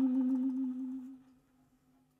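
Saxophone holding one long low note that fades away over about a second, followed by a short rest of near silence.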